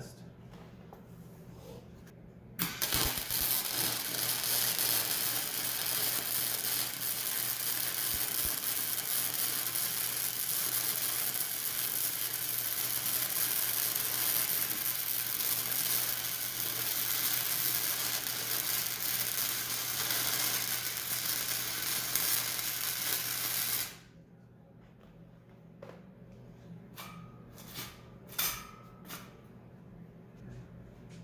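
Hobart Handler 125 flux-core wire-feed welder laying a bead on steel angle iron: the arc strikes about two and a half seconds in, runs steadily for about twenty seconds, and stops suddenly. A few light clicks and knocks follow.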